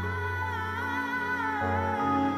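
Slow, sad background music: a low sustained note under a softly wavering high melody line, with no speech.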